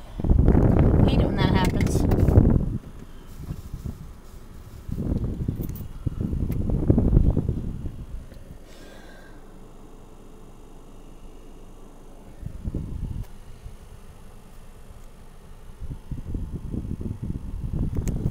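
Rumbling handling noise as a camera is moved about and its microphone rubbed, in four bursts separated by quieter stretches, with a muffled voice briefly about a second in.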